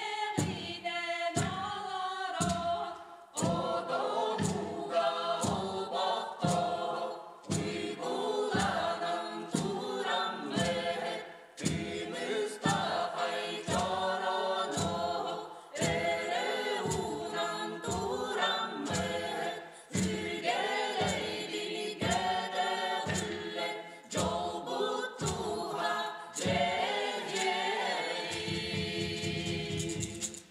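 Ensemble of women's and men's voices singing a Sakha folk song in chorus over a steady drum beat, about three strokes every two seconds. Near the end the voices hold a low sustained note.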